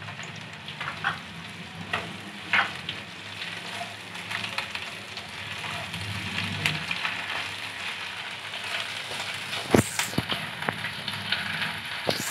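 Sliced onions and spice paste frying in oil in a non-stick kadai, sizzling steadily, while a slotted spatula stirs and scrapes them with scattered clicks. A sharp knock of the spatula on the pan comes near the end and is the loudest sound.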